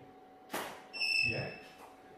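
Studio flash firing on a shot, a short sharp pop, followed about half a second later by a steady high electronic beep, typical of a strobe signalling that it has recharged.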